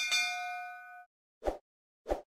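Sound effects of an animated subscribe-button graphic: a bright notification-bell ding as the bell icon is pressed, several ringing tones fading out after about a second, then a short soft pop about a second and a half in as the next icon appears.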